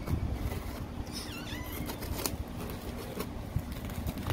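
A knife blade slitting and scraping along the packing tape of a cardboard shipping box, giving a few short, sharp crackles and scrapes over a steady low rumble.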